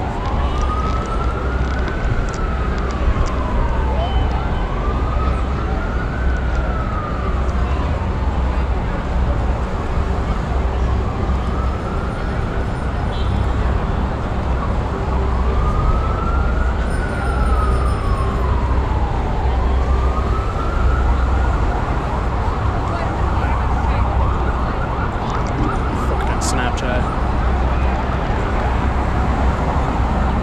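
Emergency-vehicle siren in a slow wail, its pitch rising and falling about every four to five seconds. In the last third it levels off at a high pitch and fades. Heavy city traffic rumbles underneath.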